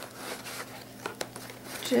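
Cardboard divider scraping and sliding against a packed row of paper envelopes as it is pulled up out of the box, with a few light ticks.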